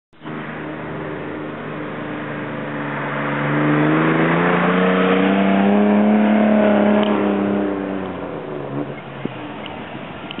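A car driving past: its engine note builds, rises a little in pitch and is loudest around the middle, then falls in pitch and fades away near the end.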